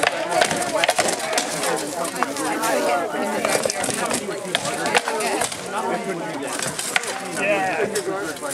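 Sharp wooden knocks of rattan swords striking shields and armor during armored sparring, a string of irregularly spaced blows, over background voices.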